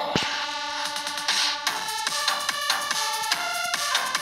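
Electronic dance remix played on a phone arranger-keyboard app. A synth melody runs over a drum-machine beat, with a heavy low hit just after the start and a hissing swell about a second and a half in.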